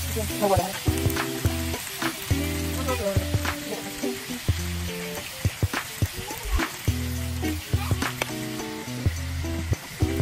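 Small whole fish sizzling as they fry in oil in a frying pan, stirred with a metal spoon that scrapes and clinks against the pan again and again. Background music with steady low chords plays under it.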